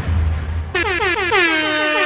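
DJ air horn sound effect over the end of a heavy bass beat: about three-quarters of a second in, a quick run of short blasts, each dropping in pitch, runs into one long held blast.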